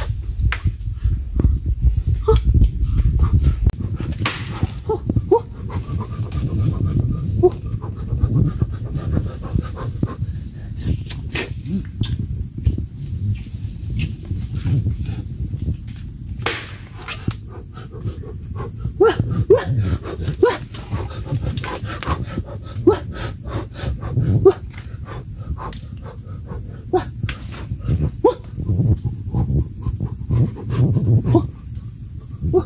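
A man breathing hard, heard close, with scattered knocks and clicks as he moves over roots and wood in mangrove mud.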